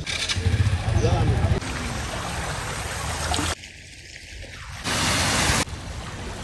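Outdoor market ambience in short spliced snippets: a murmur of voices with a low rumble, then stretches of steady hiss, with abrupt jumps in level at each cut and the loudest hiss about five seconds in.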